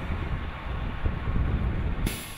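A box truck driving away along a highway: a steady low rumble of engine and tyres, with wind buffeting the microphone.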